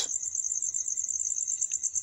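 Cricket chirping in a steady, rapid high trill of about a dozen pulses a second.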